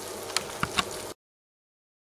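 Faint hiss with three small clicks, then dead silence from about a second in, where the recording is cut off.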